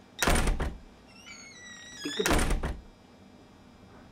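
Two heavy thumps from inside a wooden wardrobe, about two seconds apart, as someone bumps around in it looking for a costume.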